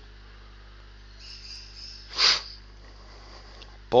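Pause in a voice recording: steady low mains hum under a faint high hiss, with one short breath about halfway through.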